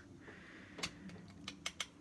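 Small plastic clicks from a Transformers Masterpiece MP-30 Ratchet figure as its parts are handled and tabs are pressed into slots during transformation; about four or five sharp, quiet clicks in the second half.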